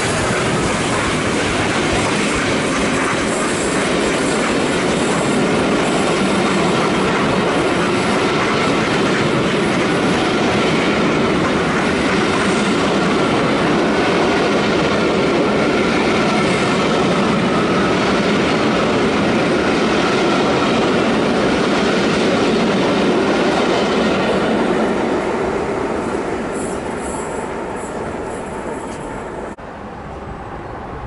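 Passenger coaches of a steam-hauled charter train passing close by at speed: a loud, steady rumble of wheels on rails. It fades away over the last few seconds as the end of the train goes by.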